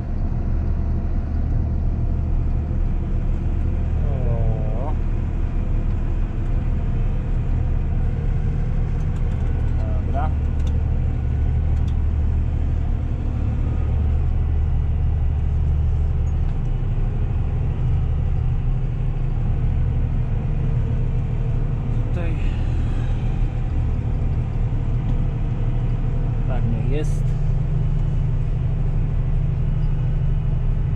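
Tractor engine heard from inside the cab, running steadily under load while driving over a silage clamp to pack it. The engine note changes about halfway through, and a few short squeaky sweeps come through.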